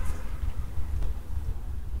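A low, uneven rumble with no clear pitch, swelling just before and easing off right after.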